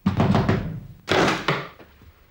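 Music made of heavy drum hits. A loud stroke opens it and a second comes about a second in, each ringing out and fading. The music dies away near the end.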